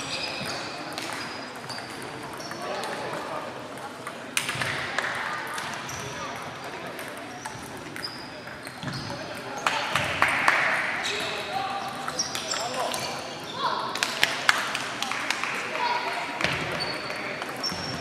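Table tennis balls clicking off bats and tables in irregular rallies at several tables, each hit with a short high ping, echoing in a large hall over indistinct voices.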